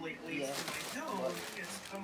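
Voice of an online class lecture playing from a device in the room: a person talking steadily, quieter than close-up speech.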